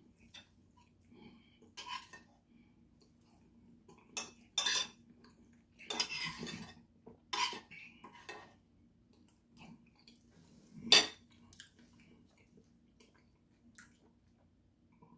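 A metal fork clinking and scraping against a ceramic plate while eating: a scatter of separate clinks, the sharpest about eleven seconds in.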